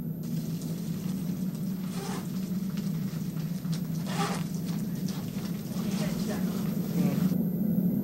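A steady low hum, with faint, brief voices about two and four seconds in.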